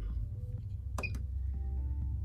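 A single sharp click about halfway through as a steel function key beside a Puloon ATM's screen is pressed, over a steady low hum.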